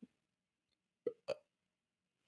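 Near silence, broken about a second in by two very short vocal sounds from a man, a quarter second apart.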